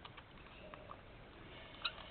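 Faint rustling of paper and a few light clicks as hands handle journal pages and craft supplies.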